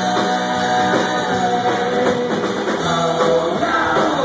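Celtic rock band playing live on electric guitars, bass and drums, heard from the audience through a phone's microphone.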